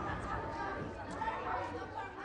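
Indistinct chatter of several voices talking at once, like pupils in a classroom.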